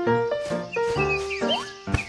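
Upbeat background music with a steady beat, held synth notes and short chirping slides.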